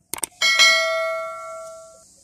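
Sound effect of a YouTube subscribe-button animation: a couple of quick mouse clicks, then a single bell chime that rings on and fades away over about a second and a half.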